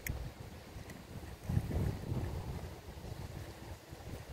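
Wind buffeting the microphone in uneven gusts, a low rumble that swells about a second and a half in.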